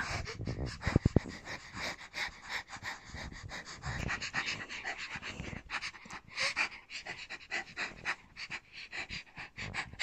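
A girl imitating a dog, panting rapidly with her tongue out close to the microphone, with a few sharp knocks about a second in.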